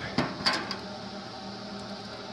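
Cast-iron stove door latch being worked by hand: two sharp metallic clicks about a quarter second apart in the first half second, the second ringing briefly. Underneath is the steady hum of the running waste-oil heater.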